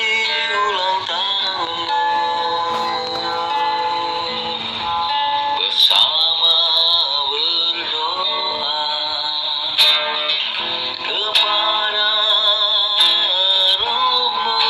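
A man singing a slow song over acoustic guitar, with long held notes that waver, played back through a phone's speaker.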